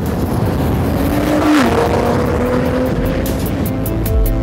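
Tuned Nissan GT-R R35's twin-turbo V6 driving past under acceleration, over background music. The engine pitch dips about a second and a half in, as at an upshift, then climbs steadily again.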